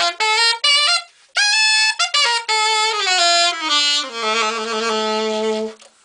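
Steve Goodson Voodoo Rex copper-bodied alto saxophone played in a fast jazz run: quick notes, a short break about a second in, then a high note and a falling line that ends on a long held low note, which stops just before the end.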